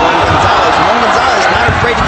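Loud, steady crowd noise of many voices in an arena, with a man's voice over it.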